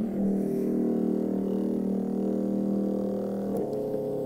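Aircrete foam generator switched on and running: a steady pitched drone that starts abruptly, its tone shifting slightly about three and a half seconds in. The machine is running with the air line at about 42 PSI.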